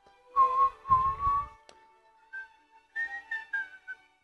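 A person whistling a short tune: one clear note held for about a second, a pause, then a few shorter, higher notes that step down in pitch near the end.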